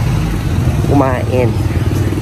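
Street traffic: motor vehicle engines, motorcycles among them, running with a steady low rumble. A voice speaks briefly about a second in.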